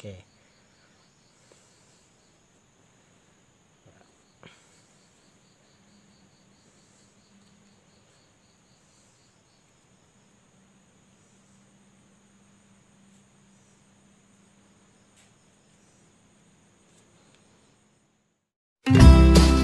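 Near silence, with faint, steady, high-pitched insect chirping throughout and one faint click about four and a half seconds in.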